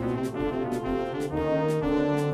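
Electronic organ playing a melody over sustained chords with a brass-like voice, backed by a steady beat about two strokes a second.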